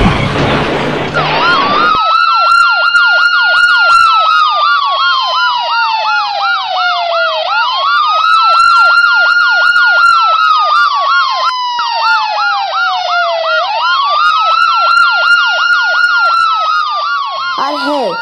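Ambulance siren wailing, its pitch rising quickly and falling slowly about every six seconds, with a fast yelping warble over it. It starts about a second in, after a short burst of noise.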